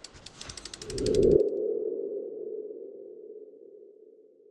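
Logo-animation sound effect: a rapid run of ticks that speeds up, under a low swell that peaks a little over a second in and cuts off suddenly. A steady hum is left behind and fades away.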